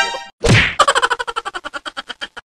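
A stainless steel bowl hits hard ground with a clang about half a second in, then wobbles and rattles rapidly as it settles, the ringing rattles fading out; a short rising pitched sound comes at the very start.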